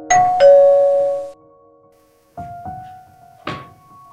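Two-tone electronic doorbell chime ringing at the start, a higher note and then a lower one that ring out and fade within about a second. A single sharp knock follows about three and a half seconds in.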